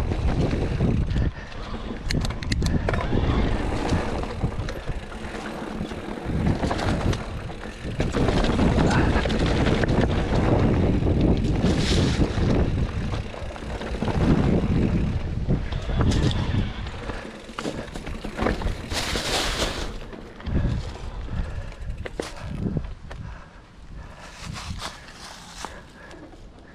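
Riding sounds of a Specialized Turbo Levo SL electric mountain bike descending a rough dirt trail: wind rushing over the microphone, tyres rolling over dirt and leaves, and frequent clicks and knocks as the bike rattles over bumps. The rush is loudest for most of the descent and eases in the last several seconds.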